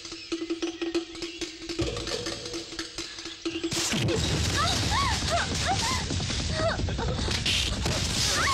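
Action-film fight soundtrack: background music with a single held tone for the first few seconds, then, about four seconds in, a sudden loud burst of music, punch sound effects and many short yelping cries.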